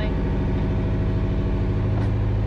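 A sailing yacht's inboard engine running steadily below deck, a loud, even, low hum heard inside the cabin.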